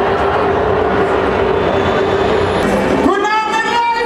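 Loud live concert sound in a crowded hall, overloaded and smeared by the camera's microphone, with one steady tone running through it. About three seconds in, it cuts to a single held high note with a clear pitch from the stage.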